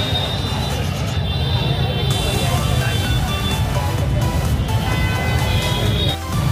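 Music playing over the steady hubbub of a large crowd on foot.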